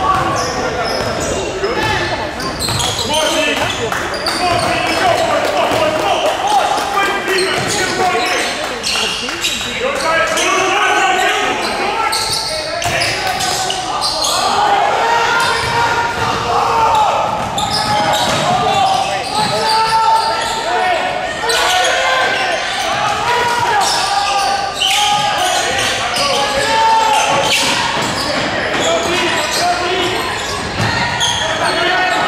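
Basketball being dribbled and bouncing on a hardwood gym floor during play, over overlapping shouts and talk from players and spectators in a large gym.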